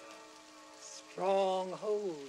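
An elderly man's voice drawing out a long, slow phrase, starting a little over a second in: the pitch holds and then slides down, over a faint steady hiss.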